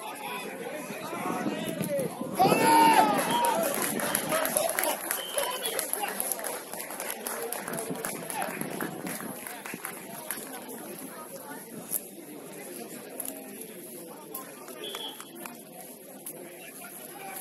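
Players and spectators shouting across an outdoor football pitch during play. A loud burst of shouting comes about two and a half seconds in, then the calls settle back to a lower level.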